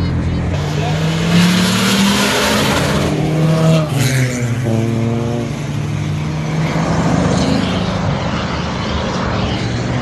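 Car engine accelerating hard, its pitch rising for a few seconds. It breaks off briefly about four seconds in, as at a gear change, and rises again, then engines of passing cars run steadily.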